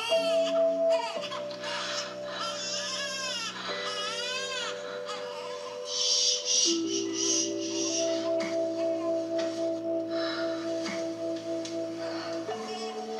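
Soundtrack of a postpartum-products commercial: held music chords that change every few seconds, with a baby crying over them in the first half.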